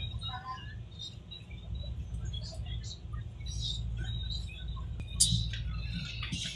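Inside a light-rail train car moving slowly through a station: a steady low rumble, with scattered faint high chirps and squeaks and a sharp click about five seconds in.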